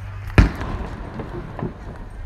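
A firework goes off about half a second in with one sharp, loud bang that echoes briefly. A few fainter pops and crackles follow.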